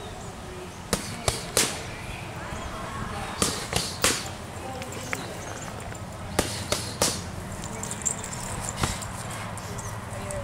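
Boxing gloves smacking focus mitts in quick combinations: three sharp slaps in a row about a second in, three more at about three and a half seconds, three more at about six and a half seconds, then a single strike near nine seconds.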